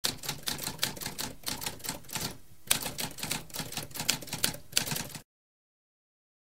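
Typewriter keys clacking in rapid succession, with a brief pause about halfway through. The typing stops suddenly a little after five seconds in.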